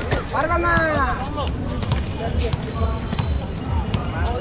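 Rollball players shouting calls to each other, loudest about half a second in, over the steady rumble of inline skate wheels rolling on a paved court. A rubber ball being bounced gives sharp knocks.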